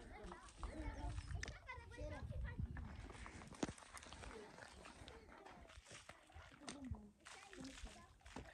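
Faint, distant voices talking, with a single sharp click about three and a half seconds in.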